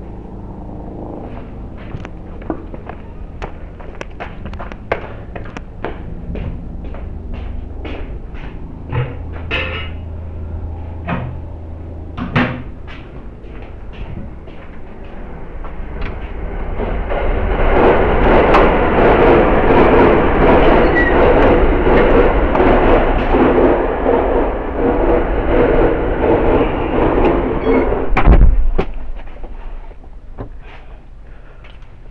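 Handling noise on the built-in microphone of cheap plastic spy-camera glasses: a run of sharp clicks about twice a second, then a loud, dense rustling and rubbing close to the microphone for about ten seconds, ending in a heavy thump near the end.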